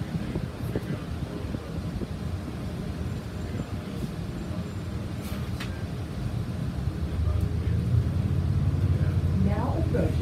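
Transit bus running, heard from inside the passenger cabin: a steady low engine and road rumble that grows louder about seven seconds in, with a few light rattles.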